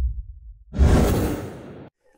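The tail of an electronic intro track fades out. About three-quarters of a second in, a whoosh sound effect starts abruptly and dies away over about a second.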